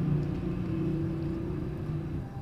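Steady low background hum and rumble with a faint constant drone, and no distinct events.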